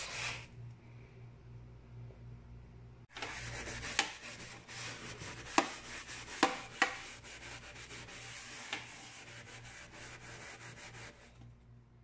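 Steel-wool scourer scrubbing a marble kitchen sink around the drain, lifting stains loosened by a soak of diluted bleach and surface cleaner. The scrubbing is a steady rasping rub that picks up about three seconds in and runs almost to the end, with a few sharp clicks of the scourer against the sink.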